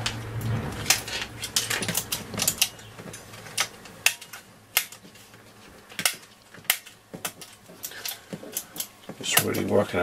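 Push-button switch bank of a Hacker Super Sovereign RP75 transistor radio being pressed in and out repeatedly, a run of sharp irregular clicks, working freshly sprayed DeoxIT D5 contact cleaner into the switch contacts. A man's voice begins near the end.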